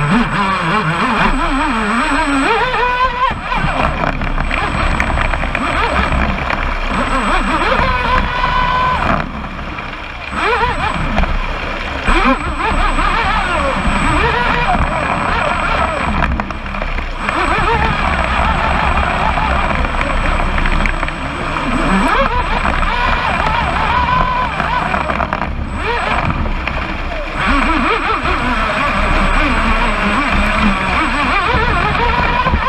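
Onboard sound of a Pro Boat Blackjack 29 RC catamaran running at high speed: the brushless electric motor's whine wavers in pitch over the rush of water and spray along the hull. The sound dips briefly three times.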